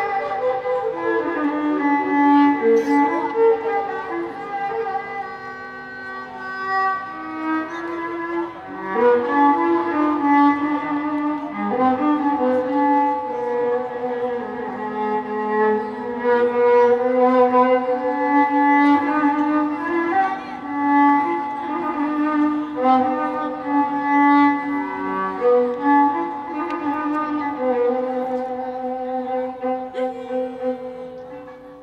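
Violin playing a slow melody of long held notes that slide from one pitch to the next.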